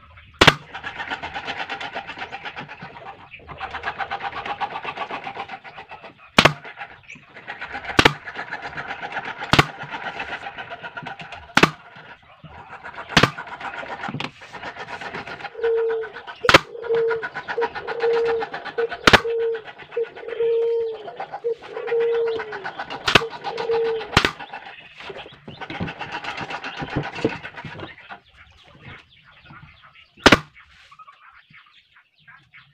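Pneumatic brad nailer fired about ten times, each a sharp, loud shot of a nail driven into plywood, spaced unevenly a second and a half to several seconds apart. A dove coos repeatedly in the background, most clearly in the second half.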